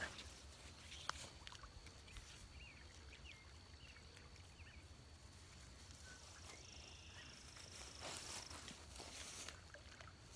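Near silence: faint outdoor background with a thin, steady high tone and a single light tick about a second in.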